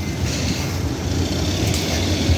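Steady low rumble of vehicle noise.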